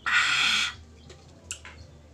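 A man's loud, harsh, breathy shriek with his mouth wide open, lasting under a second, a reaction to the sour taste of the green fruit he has just bitten. A few faint clicks follow.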